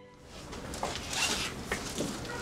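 Rustling of clothes being handled and stuffed into a bag in a hurry, with several short, sharp swishes.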